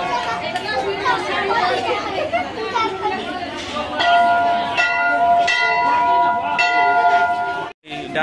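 Temple bell ringing over crowd chatter: a lingering ring fades in the first second, then the bell is struck again several times in the second half, each strike leaving a sustained ringing tone, until the sound cuts off suddenly just before the end.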